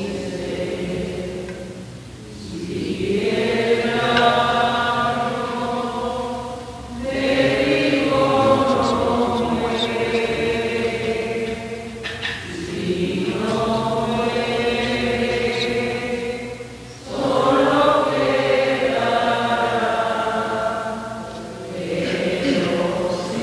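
Offertory hymn sung slowly in the style of a chant, in long held phrases of about four to five seconds each, with a short breath between phrases.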